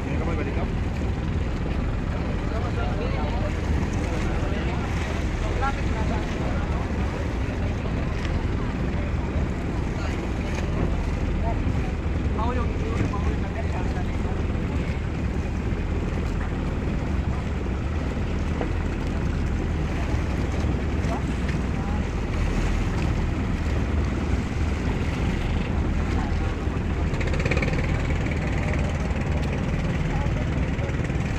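Steady low rumble of an outrigger boat's engine running, with wind on the microphone and scattered distant voices.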